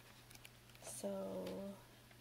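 A single drawn-out spoken "so" about a second in, held at one pitch, over faint rustling of paper pages being turned and a low steady hum.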